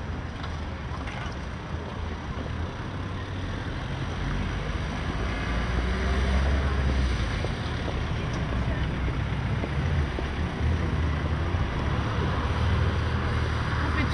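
Outdoor city ambience carried by a steady low engine rumble, which grows a little louder about five seconds in.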